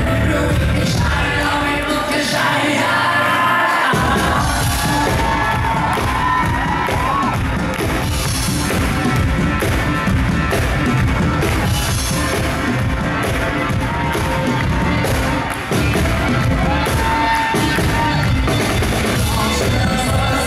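Live pop band with a male lead singer performing in a concert hall. The bass and drums drop out for about two seconds and the full band crashes back in about four seconds in.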